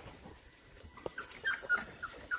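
Young Cane Corso puppies whimpering: a few short, high squeaks in the second half.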